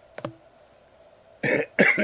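A man's single short cough about one and a half seconds in, after a quiet pause broken only by a faint click near the start.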